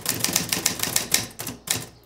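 A typewriter clacking in a fast, uneven run of keystrokes, with a couple of brief pauses between bursts.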